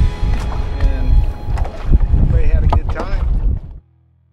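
Heavy wind buffeting on the microphone out on choppy open water, a loud low rumble that cuts off suddenly near the end.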